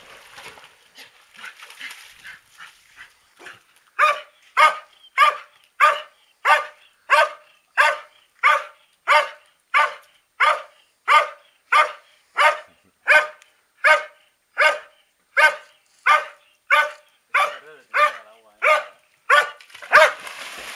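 A dog barking over and over at an even pace, about three barks every two seconds, starting about four seconds in.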